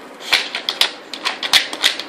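Wooden dog puzzle board clattering as a dog noses and pushes its sliding blocks: a run of irregular, sharp wooden clacks, several a second.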